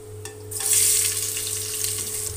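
Sliced onion, grated ginger and green chilli dropped into hot mustard oil in a pressure cooker, setting off a sudden, loud sizzle about half a second in that carries on steadily.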